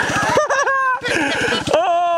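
A four-wheeler's engine running with an even low pulsing beat, while people laugh loudly over it.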